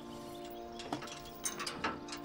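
Metal clicking and rattling, a few sharp clicks about a second in and more near the end, typical of a wrought-iron gate's latch being worked, over a steady held background drone.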